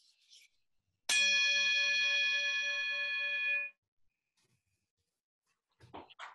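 A single strike on a bell-like metal instrument with a wooden stick. It rings with several steady tones that hold for about two and a half seconds, the lowest ones wavering slightly, and then cuts off suddenly.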